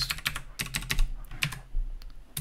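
Computer keyboard keystrokes: an irregular run of quick key clicks while the editor is driven from the keyboard.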